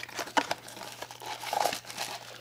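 A small white cardboard box being handled and opened: its flaps and packaging rustle and crinkle with short scattered clicks as a camera case is slid out of it.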